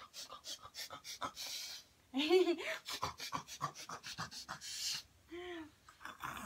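A woman and her baby playing close together: short breathy huffs and small clicks, with a brief voiced sound about two seconds in and a short one near the end.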